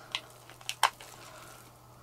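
A few light clicks and taps of a stick scraping leftover epoxy resin out of a small plastic cup, the sharpest about four-fifths of a second in.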